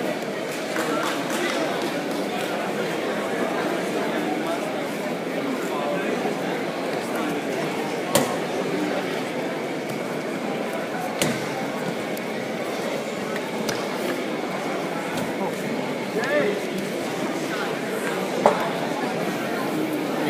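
Indistinct crowd chatter and voices echoing in a large hall, a steady din throughout. There is a sharp knock about eight seconds in and another about three seconds later.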